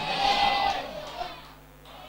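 A pause between spoken phrases: faint hiss and room noise that fades away over about a second and a half.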